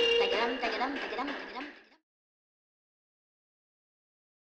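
A high voice singing a long held note, then a run of short gliding notes. It is cut off abruptly about halfway through, and dead silence follows.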